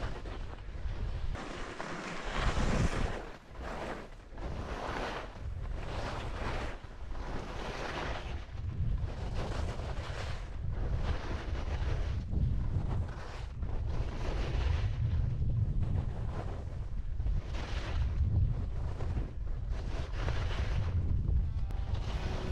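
Skis scraping and hissing over packed snow, swelling and fading with each turn about once a second, with wind rushing over an action camera's microphone.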